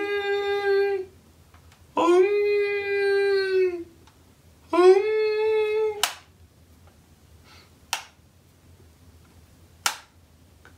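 A young man's voice holding three long, steady notes at one pitch, each one to two seconds with a pause between, a mock 'chakra' meditation chant. Three short clicks follow in the second half.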